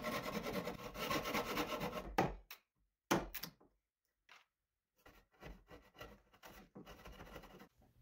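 Handsaw cutting across 2x6 lumber in quick, rasping back-and-forth strokes that stop about two and a half seconds in, as a joint is cut into the rocker side. After a short knock and a pause, a chisel pares the waste with faint scrapes and ticks.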